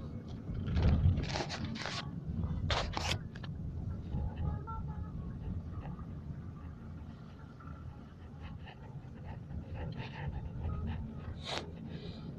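Steady low rumble of a car's cabin, with a few short rustles or breaths close to the phone's microphone, the loudest about a second in and another near the end.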